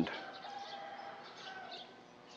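Faint bird calls: a few thin, held whistled notes.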